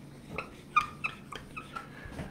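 Dry-erase marker squeaking against a whiteboard as it writes, in a run of short squeaks.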